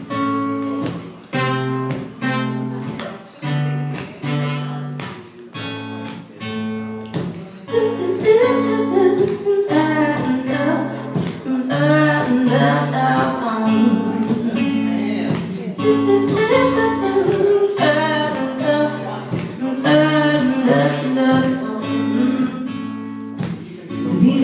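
Acoustic guitar played as a song intro: strummed chords in a steady rhythm with short breaks between them. The playing grows fuller and busier about eight seconds in.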